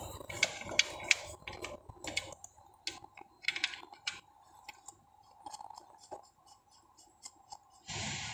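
Scattered light clicks and taps of hands handling metal parts at a car's gearbox, irregular and short, over a faint steady hum.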